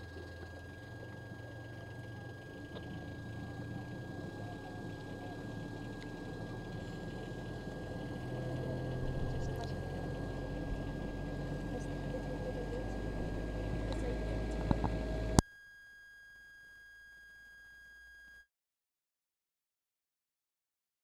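Faint background from an open live-commentary microphone: a low rumble with indistinct voices and a thin steady whine, slowly growing louder. It cuts off suddenly about fifteen seconds in, leaving silence.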